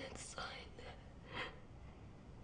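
A woman crying quietly: a few breathy sobs and sniffs, the loudest about one and a half seconds in.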